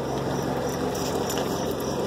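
International Harvester Scout's engine idling steadily, a low even hum.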